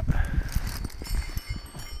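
Brass sleigh bells on a standing horse's harness jingling faintly, with small clinks, over a low rumble.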